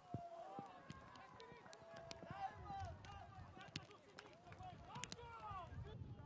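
Football players' distant shouts and calls across the pitch, faint, with a few sharp knocks from play on the field.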